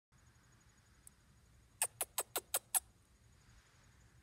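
Eastern chipmunk giving a quick run of six sharp chirps, each sliding down in pitch, a little under two seconds in.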